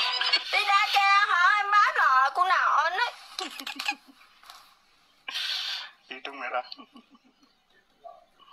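High-pitched voices whose pitch slides strongly up and down for about three seconds. A few short vocal sounds and a brief breathy burst follow a little after five seconds.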